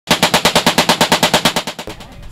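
Browning M1919 .30-caliber machine gun firing one long burst, about nine shots a second, that stops near the end.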